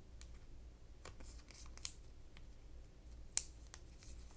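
Faint ticks and rustles of fingers peeling a small paper label sticker off its backing, with two sharper clicks, one a little before two seconds in and one about three and a half seconds in.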